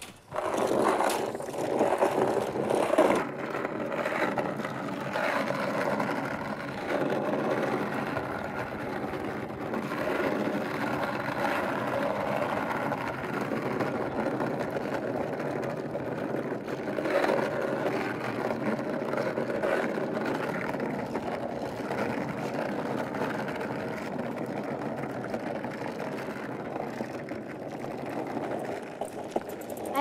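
Skateboard wheels rolling steadily over rough asphalt as the board is towed behind a bicycle, a continuous rumble.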